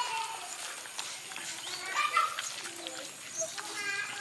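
Dogs eating cooked rice from a metal tray, with chewing, licking and small clicks. Short high-pitched calls sound on and off over it, the loudest about two seconds in and another near the end.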